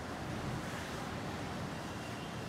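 Water buffalo being milked by hand: streams of milk squirting into a metal pail, heard as a steady noisy swish.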